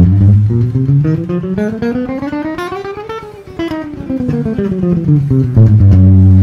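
Ibanez electric guitar playing the 1-2-3-4 chromatic finger warm-up, one note at a time. The notes climb steadily in pitch for about three seconds, then step back down the same way and end on a held low note.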